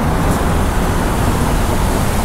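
Steady city street traffic noise: an even rush of passing vehicles with a low rumble underneath.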